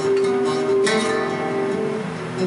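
Live flamenco guitar music, an acoustic guitar strumming chords, with a sharp strummed accent a little before the middle.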